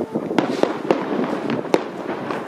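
Aerial fireworks bursting overhead: a run of sharp bangs and crackles, the sharpest about three quarters of the way through.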